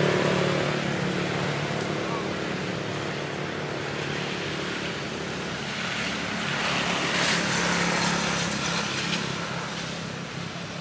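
A motor vehicle engine humming steadily, swelling louder about seven seconds in as it comes closer.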